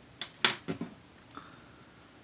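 A straight razor slicing through strands of fringe hair, giving a few short, crisp strokes within the first second, the loudest about half a second in, then one faint stroke.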